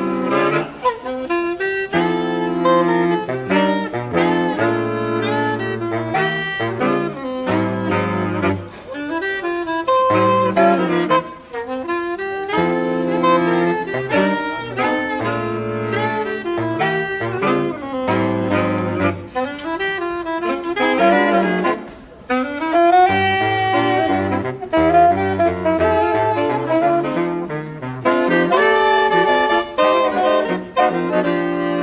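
A saxophone quartet playing a jazz piece together, with a low bass line under the upper voices. There are short breaths in the playing about eleven and twenty-two seconds in.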